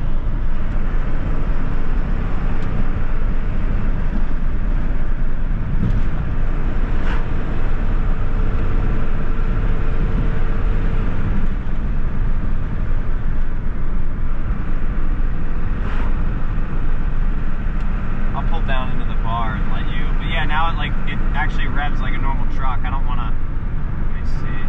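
12-valve 5.9 Cummins turbo diesel in a second-generation Dodge Ram running under way, heard from inside the cab as a steady rumble with tyre and road noise. The engine has freshly fitted 3,000 rpm governor springs.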